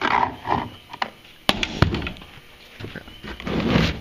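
Handling noise on a boat deck: a few sharp clicks and knocks, then a duller handling noise near the end as a storage hatch latch is gripped.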